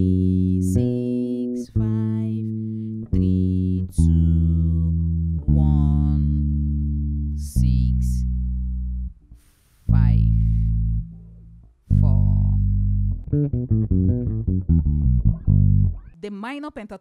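Electric bass guitar played solo: a phrase of long, ringing notes, then a quicker run of short notes near the end, drawn from the B minor pentatonic scale.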